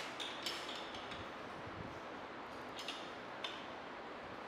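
A few light clicks and clinks from hands taking hold of the metal collar of a permeameter mould, over a steady background hiss.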